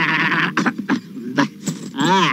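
A man's loud, quavering, bleat-like cry as he throws his head back after a swig of liquor, followed by a few sharp clicks.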